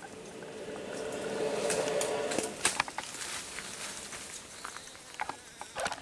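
A steady buzz that stops about two and a half seconds in, then rustling of leaves and twigs with scattered sharp clicks and crackles as people move through the undergrowth.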